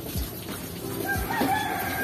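A rooster crowing once, starting about halfway in: a short rising note, then a long held call.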